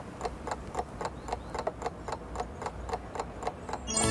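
Steady ticking like a clock, about four ticks a second, over a faint low hum.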